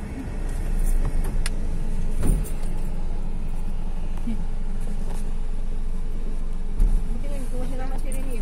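Steady road and engine noise inside a moving car's cabin, growing louder about a second in, with a few sharp knocks from the cabin.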